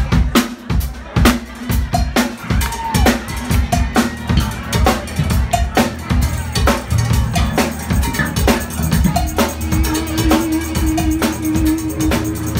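Live band music: drum kit and hand percussion playing a fast, busy beat over a steady bass line, starting with a loud hit. A held note on a melodic instrument comes in near the end.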